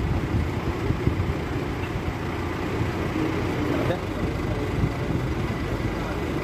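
Steady low rumble of motor vehicle noise, with faint indistinct voices about three seconds in.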